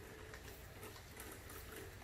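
Quiet outdoor background: a faint, even hiss with no distinct event.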